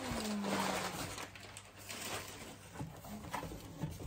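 Rustling of a wrapped gift bag and cardboard being handled, with scattered light knocks from the box; a short falling vocal sound opens it.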